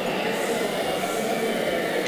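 Steady, indistinct chatter of a crowd in a large convention hall, with no single voice standing out.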